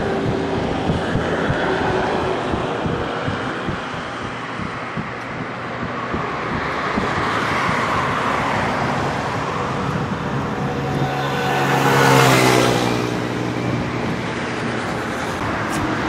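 Steady road traffic running past, with one vehicle passing close about twelve seconds in, its engine note dropping in pitch as it goes by.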